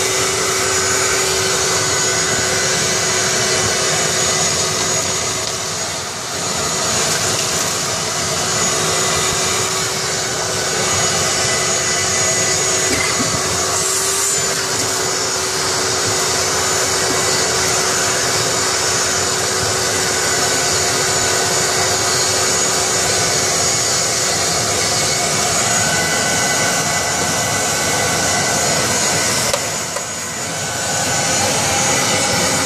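Shop vacuum running steadily, sucking lint out of a dryer vent pipe, with a constant hum and high whine and a brief dip in level about six seconds in.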